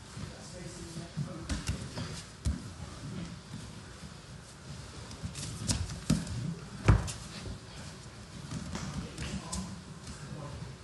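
Grappling on foam gym mats: bodies and limbs thumping, sliding and shuffling on the mat, with a few sharp thumps and the loudest one about seven seconds in.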